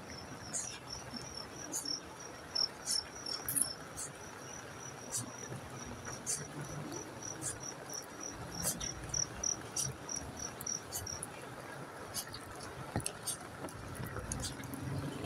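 A cricket chirping in a steady high-pitched pulse, about three chirps a second, stopping near the end, over a steady hiss of rain with scattered sharp ticks.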